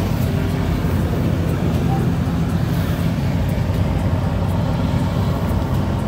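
The engine of a 1982 Fleetwood Tioga motorhome running steadily, heard from inside the cab as an even low hum.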